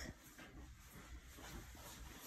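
Near silence: quiet room tone during a pause in speech.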